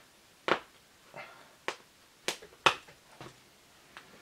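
Handling at a fly-tying bench: about six short, sharp clicks and taps, unevenly spaced, the loudest about two-thirds of the way through.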